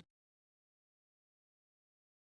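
Near silence: the sound track is blank, with no sound from the dial being turned.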